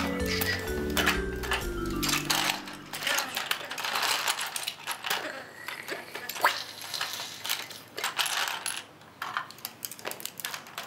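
Music ends about two or three seconds in; after that, loose plastic Lego bricks clatter and click as hands rummage through a pile of them.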